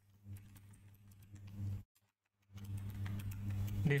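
Computer keyboard typing: light, scattered key clicks over a steady low electrical hum, which cuts out briefly about two seconds in.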